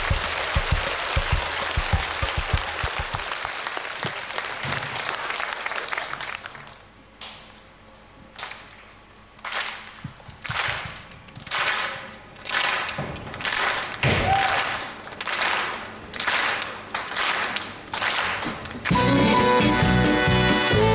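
Studio audience applause that fades out over the first six seconds, followed by a slow series of sharp percussive hits, about one a second and growing louder, as the dance music opens; just before the end the full music comes in with accordion and strings.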